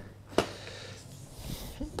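A single light click about half a second in, then faint rustling, as a Maxi-Cosi Leona 2 stroller's canopy is pulled down to full extension.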